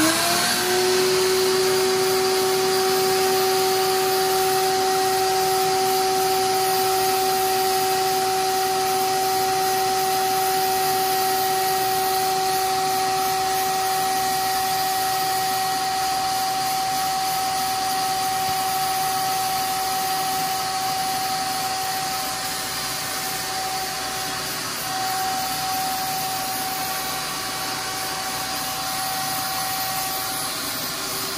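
Ridgid 16-gallon wet/dry shop vacuum switched on, its motor rising in pitch for about a second and then running with a steady whine. A small brush nozzle sucks dust off the fins of a window air conditioner's coil.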